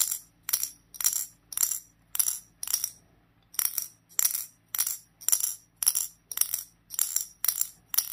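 A small metal ball clicking against the glass cover and metal cone of a handheld wooden dexterity puzzle as the puzzle is jolted over and over to bounce the ball up. Sharp, ringing clicks come about twice a second, with a brief pause near the middle.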